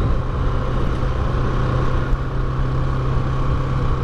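Bajaj Pulsar 200NS single-cylinder engine running at a steady cruising speed, its hum holding one pitch, with road and wind rumble underneath.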